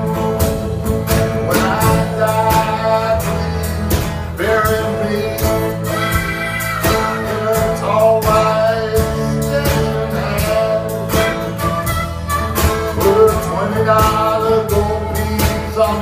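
Live blues band of two acoustic guitars and an electric bass, with a harmonica carrying the melody over the strummed guitars and bass line.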